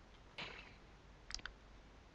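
Faint short clicks: a soft brief noise about half a second in, then a quick cluster of small sharp clicks about a second and a half in.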